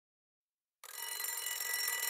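Alarm clock bell ringing, starting about a second in and growing gradually louder.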